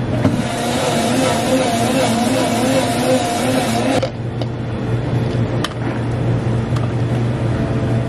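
Café countertop blender running on a strawberry banana juice, its pitch wavering as the fruit churns, then cutting off suddenly about halfway. After that a low steady hum remains, with a few light clicks of plastic cups set down on the counter.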